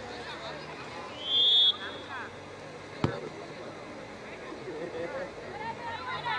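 Referee's whistle, one short blast of about half a second, then about a second and a half later a single sharp thud of a football being kicked, as for a free kick. Players and spectators call out around it.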